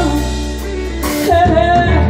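Live blues band playing, with a woman singing into a microphone over drums and electric bass; a sung phrase comes in about a second in over sustained bass notes.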